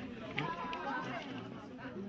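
Several people talking at once in low, overlapping chatter, with no single clear voice.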